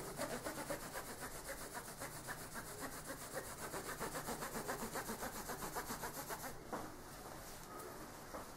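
Cotton cloth rubbed quickly back and forth over a plastic comb, a faint rhythmic rubbing at about five strokes a second that stops about a second before the end.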